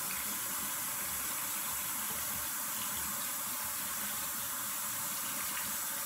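Water running steadily from a bathroom sink tap, an even hiss.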